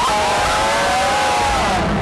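Several voices join in one long, drawn-out 'ooh', held for about a second and a half and falling away near the end.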